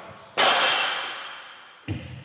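A sudden loud metallic crash that rings and fades over about a second and a half, followed by another sharp hit near the end.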